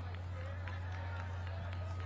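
Steady low hum under faint, indistinct voices of people talking, with a few light clicks.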